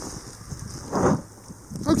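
Wind noise on the microphone in a snowstorm, a steady hiss. A short rustle comes about a second in and another near the end.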